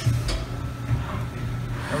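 Haas MDC 500 CNC mill's side-mounted tool changer swapping a tool with its swing arm: a clunk right at the start and another shortly after, over the machine's steady low hum.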